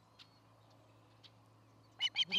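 Near silence: a low steady hum with a couple of faint, very short chirps, one just after the start and one past the middle.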